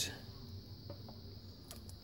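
A few faint, light clicks from handling the transistor tester's clip leads as they are moved onto a second inverter transformer, one about a second in and another near the end.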